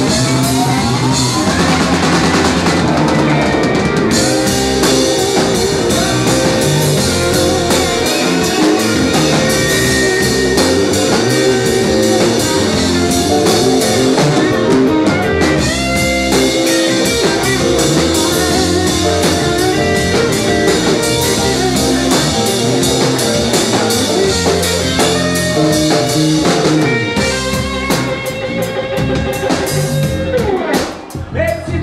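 Live rock band playing an instrumental passage: a hollow-body electric guitar playing lead lines over drum kit and electric bass, the music thinning out near the end.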